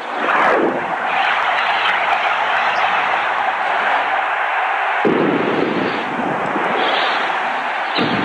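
Television bumper sound effect: a quick falling whoosh, then a steady rushing noise over the flame graphics, which fills out lower about five seconds in.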